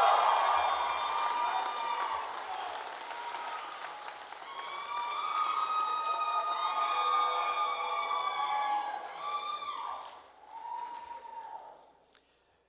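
Audience applauding and cheering, with voices yelling over the clapping in two swells, fading out near the end.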